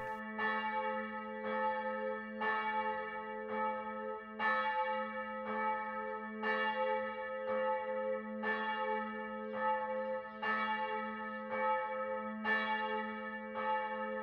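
A church bell tolling about once a second, its hum ringing on between the strikes. It is rung for the family's dead on All Saints' Day.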